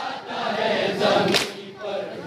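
Crowd of men chanting a nauha, a Shia lament, in unison, with one sharp slap of synchronized chest-beating (matam) about one and a half seconds in.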